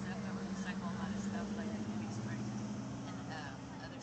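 A motor, most likely an engine, running at a steady low hum under faint background chatter of voices.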